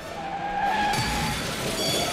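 Cartoon tire-screech sound effect: a long skidding squeal with a wavering pitch, standing for a racing snail spinning out of control. It breaks off for a moment at the start and then carries on.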